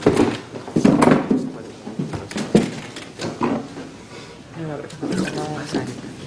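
Several voices talking and calling out in a room, no clear words, with a few sharp knocks in the first seconds.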